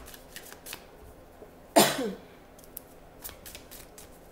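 A deck of tarot cards being shuffled by hand: a steady run of soft card clicks and snaps. About halfway through comes one short, loud vocal sound that drops in pitch.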